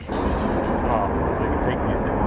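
High-pressure natural gas rushing out of a ruptured underground line: a steady, loud roar like a jet engine, heaviest in the low end.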